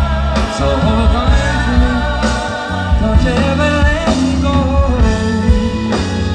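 A live band playing with a singer: drums, bass, guitar and a vocal line, recorded from within the audience.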